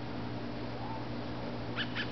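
Two short, high-pitched animal calls in quick succession near the end, over a steady low background hum.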